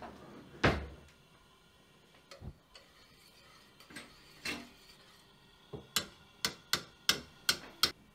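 Kitchen clatter of a metal spoon and a stainless steel saucepan on a gas hob: a dull thump about a second in, a few light knocks, then a quick run of sharp clinks near the end, about three a second.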